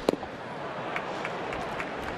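A baseball pitch popping into the catcher's mitt, one sharp loud smack about a tenth of a second in: a strikeout pitch at about 85 mph. A ballpark crowd's steady hum follows, with a few faint short sharp sounds.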